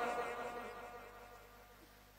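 A man's amplified voice ringing on in a large hall's echo after his last word, fading to near silence within about a second and a half.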